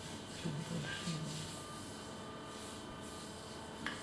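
Hands rubbing and kneading bare skin during a back massage, faint against a quiet room, with a brief low voice murmur about a second in and a soft click near the end.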